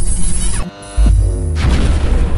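Logo sting sound effect: a rising whoosh swells, then drops away into a falling tone, and a deep boom hits about a second in and rumbles on.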